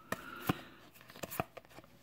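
Cardboard trading cards being flicked one at a time through a hand-held stack, giving a few sharp flicks and slides.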